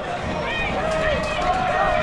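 Men shouting on a football pitch: two long, drawn-out calls, with no clear words, over steady outdoor background noise.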